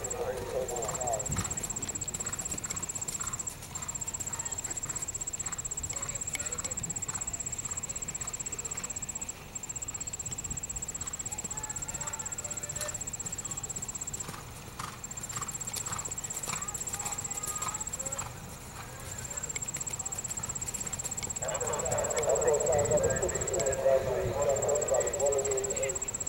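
A horse's hoofbeats as it canters a show-jumping course on dirt arena footing, a run of soft, irregular thuds.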